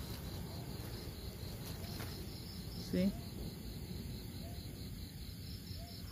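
Crickets chirping in a steady, evenly pulsed trill.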